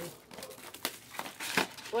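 Foil wrappers of Panini Select trading-card packs crinkling as the packs are opened, in a few short crackles.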